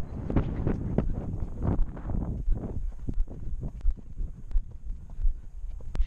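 A horse's hooves at a trot on a dirt track, a steady beat of dull thuds about two to three a second, with wind rumbling on the microphone.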